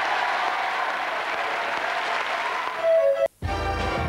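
Studio audience applauding, then a sudden cut: about three seconds in the sound drops out for a moment and music with a strong bass line starts.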